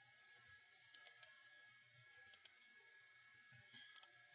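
A few faint computer mouse clicks, mostly in quick pairs, over near silence.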